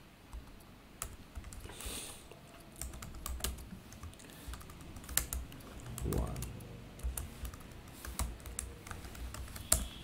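Computer keyboard typing: irregular keystrokes clicking throughout, with one sharper key strike near the end.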